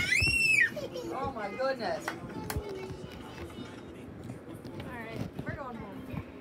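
A young child's high-pitched squeal that rises and then falls, loudest in the first second, followed by shorter bursts of child vocalising.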